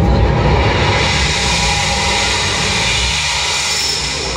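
A jet-like rushing whoosh in an electronic show soundtrack, growing brighter from about a second in as the bass drops away near the end.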